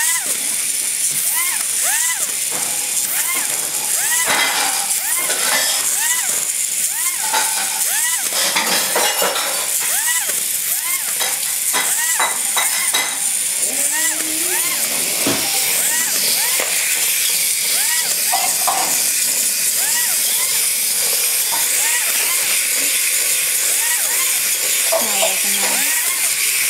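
Small battery-powered toy robots running on a hard floor: a steady high buzzing hiss from their motors and legs, with repeated electronic chirps that rise and fall in pitch, about two a second.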